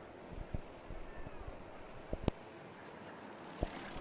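Racing kart engines running faintly along the track, with a few sharp clicks, one louder just past the middle.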